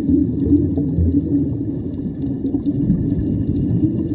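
Scuba divers' exhaled air bubbling up through the water, heard underwater as a steady low rumble.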